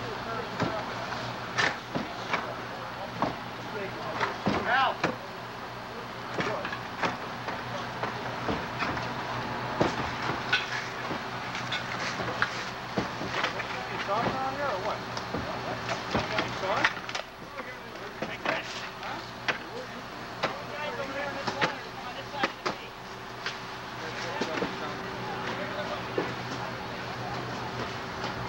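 Fire-scene ambience: a steady engine hum runs under indistinct voices, with scattered knocks and clatter throughout.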